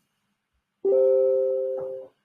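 A short two-note chime with a piano-like tone, struck just under a second in and fading away over about a second.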